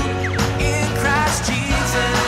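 Upbeat pop-rock song played by a band with guitars and drums, with sung vocals.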